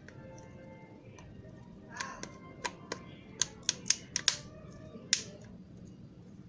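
The plastic housing of a Xiaomi Redmi Note 5A snapping together as it is pressed closed by hand: about ten sharp clicks over some three seconds, starting about two seconds in, over faint background music.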